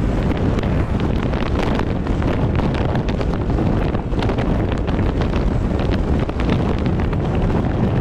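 Steady wind and road noise of a Peugeot 206 on the move, heavy and rumbling on the small camera's microphone, with frequent light crackles.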